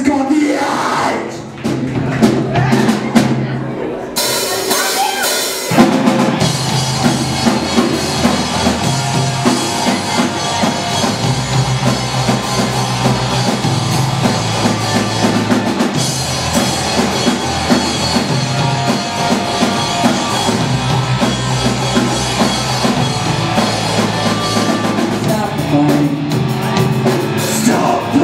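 Live rock band with two electric guitars, bass and drum kit playing a song. It opens with guitar and bass alone; cymbals come in about four seconds in, and the full band with drums from about six seconds on, then plays on steadily.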